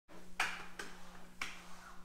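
Three sharp clicks, a half-second or so apart, over a faint steady hum.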